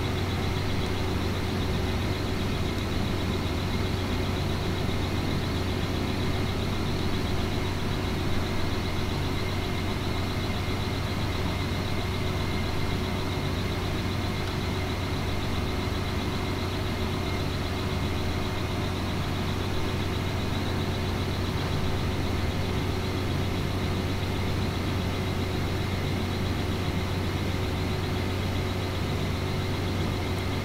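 Steady low machine hum with a few faint steady higher tones over it, unchanging throughout.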